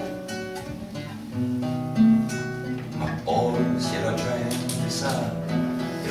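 Acoustic guitar played as song accompaniment, chords ringing with new strums about one and a half, two and three seconds in.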